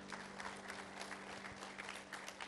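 Congregation clapping, a faint crackle of many hands, with a low steady tone held underneath.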